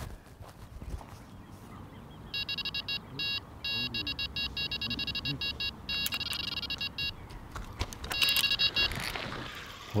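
Electronic carp bite alarm sounding a take: a fast run of high electronic beeps starts about two seconds in, runs together into an almost continuous tone around six seconds, then breaks into beeps again and stops about nine seconds in, as a hooked carp pulls line through the alarm.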